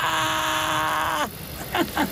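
A voice holding one long, steady, high cry of surprise for just over a second, then cutting off sharply, followed by a few brief voice sounds near the end.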